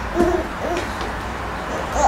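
A person's voice making two short hoot-like 'mm' murmurs, the first about a fifth of a second in and the second just under a second in, over a steady low hum.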